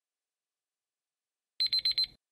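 Countdown timer alarm going off as the timer hits zero: a quick burst of four high electronic beeps near the end, signalling that time is up.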